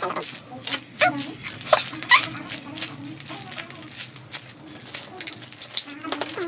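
Scattered crinkles and rustles of a clear plastic sheet and cotton stuffing being handled, with a soft voice murmuring briefly.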